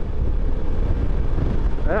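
Wind rushing over the microphone and steady engine and road noise from a 2020 Suzuki V-Strom 650 V-twin motorcycle cruising along a paved highway.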